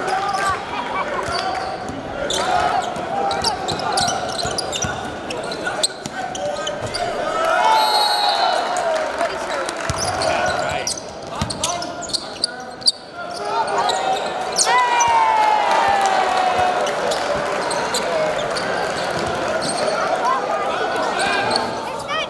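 Basketball game sound in a gymnasium: the ball bouncing on the hardwood court under a steady hum of crowd voices, with sneaker squeaks about 8 s and 15 s in.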